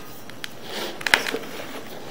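A drain inspection camera's push rod being drawn back through the pipe, giving a few sharp clicks a little past a second in over a steady hiss.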